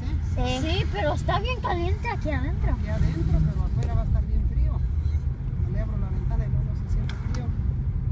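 Steady low road rumble inside a moving car's cabin, with a girl's voice talking over it during the first few seconds.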